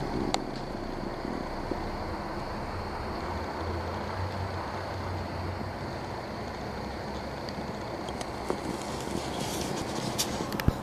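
Steady rumble of street traffic, swelling for a few seconds near the middle, with a few small clicks.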